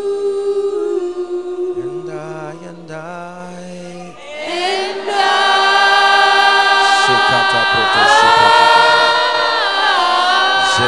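Worship team and congregation singing a slow worship song a cappella, voices only, on long held notes. The singing thins out and softens a couple of seconds in, then swells louder and fuller about four seconds in.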